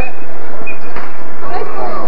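Indistinct voices over a loud, steady noisy background, with two brief high-pitched squeaks in the first second.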